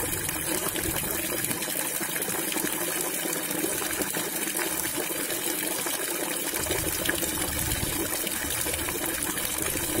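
Tap water pouring in a steady stream into a half-filled tub of water, splashing and gushing on the surface as the tub refills.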